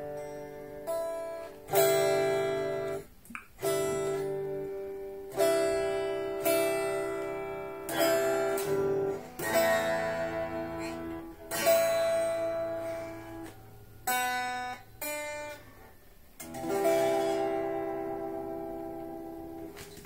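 Unplugged solid-body electric guitar of the Stratocaster type, heard acoustically. It plays a slow run of about a dozen chords, each struck and left to ring out and fade, with a thin, acoustic-like tone.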